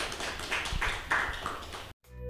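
Audience applauding, cut off abruptly near the end.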